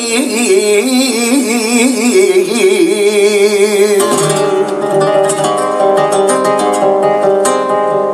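Male flamenco cante singing a taranta de Linares, a long melismatic line with a wavering, ornamented pitch, over a nylon-string flamenco guitar. About halfway through the voice stops and the guitar carries on alone, ringing notes followed by a run of rapid strums.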